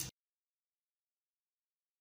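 Silence: the sound track cuts off suddenly just after the start and stays completely silent.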